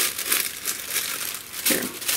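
Thin patterned paper sheets rustling and crinkling as they are handled and folded.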